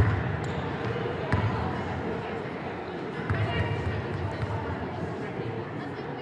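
Basketball gym during a game: a ball bouncing on the court a few times, over indistinct background voices.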